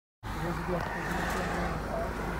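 A cut of dead silence, then from a fifth of a second in a steady low rumble of a stopped car's interior, its engine idling, with faint muffled voices.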